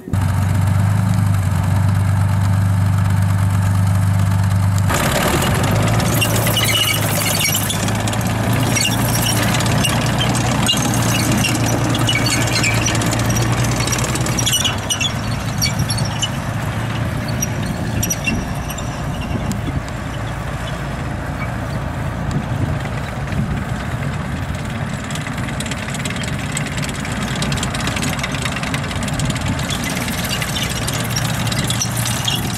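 BVP-1 (BMP-1) infantry fighting vehicle's diesel engine running with a steady low drone. About five seconds in, the vehicle pulls away, and the rattle and clank of its tracks joins the engine as it drives off. The sound grows a little quieter over the second half.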